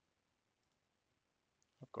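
Near silence: room tone, with one faint click about one and a half seconds in, a computer mouse button being clicked.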